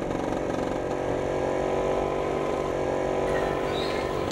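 Vespa scooter engine running at a steady speed while riding along the road.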